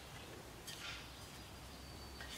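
Quiet workshop room tone with a faint steady low hum, and one soft, brief sound of wooden strips being handled on the bench a little under a second in.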